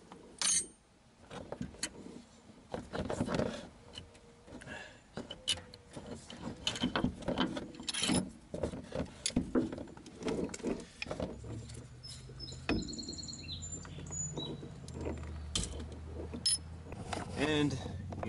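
Irregular metal clinks and knocks of hand tools and a puller being handled while the harmonic balancer is worked off the crankshaft of a 2.0 L engine by hand. A low steady hum joins in the middle.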